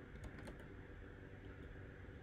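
Faint clicks of a computer keyboard and mouse, a quick cluster of a few clicks about half a second in, then one or two lighter ones, over a low steady room hum.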